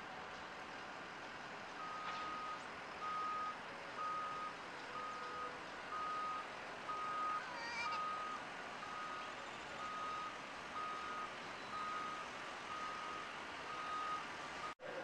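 A vehicle's reversing alarm beeping: a single steady high tone, about one beep a second, starting about two seconds in and going on throughout, over steady street noise.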